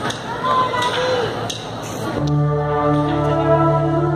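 Crowd noise with a short rising-and-falling call. About two seconds in, a sustained keyboard synth pad chord comes in with a deep bass note and holds steady, opening the song.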